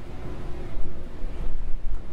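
A steady low rumble of background noise, strongest in the deep bass, with a faint steady hum.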